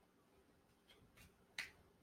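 Near silence broken by a few faint, short clicks, the clearest about a second and a half in.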